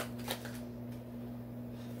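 Tarot deck being shuffled: a couple of quick card flicks in the first half-second, then a low steady hum with little else.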